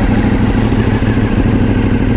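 Ducati Multistrada V4's V4 engine idling steadily through an exhaust with the catalytic converter removed (cat delete).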